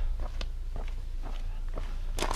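Footsteps of a person walking, a few light steps and scuffs over a low steady rumble.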